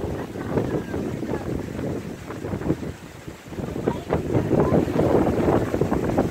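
Wind buffeting the microphone in uneven gusts. It eases briefly about three seconds in, then blows harder.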